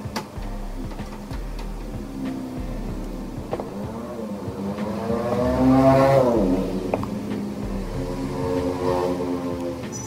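A motor vehicle engine passing by, its pitch rising and then falling, loudest about six seconds in, with a second, fainter one near the end. A few light clicks of hand tools on the circuit board.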